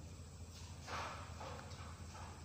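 Quiet room tone with a steady low hum and a couple of faint, soft knocks or shuffles, about half a second and a second and a half in.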